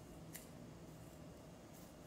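Faint snips of scissors cutting lengthwise through an adhesive strip bandage with its backing still on. One sharper click comes about a third of a second in and fainter ones near the end.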